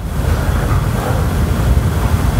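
Steady rumbling noise, strongest in the low end, with no speech over it.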